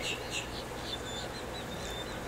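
Faint outdoor background of high-pitched chirps repeating rapidly, several a second, over a thin steady high tone: small birds or insects calling.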